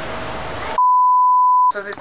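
An edited-in censor bleep: one steady beep of a single pitch, just under a second long, with all other sound cut out while it plays. A voice starts right after it.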